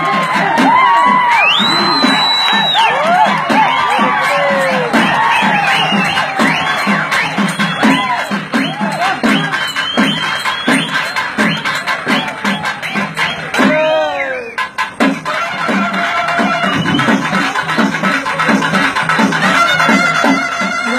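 Live karakattam folk music: drums beating a steady rhythm under a reed-pipe melody that bends and slides in pitch.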